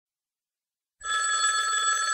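A telephone ringing, starting about a second in after silence, as a steady ring of several fixed tones.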